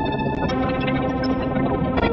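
Electronic music from the Fragment additive (spectral) software synthesizer playing a Renoise-sequenced pattern, with delay and reverb added. Many steady tones sound together, and the upper notes change about half a second in.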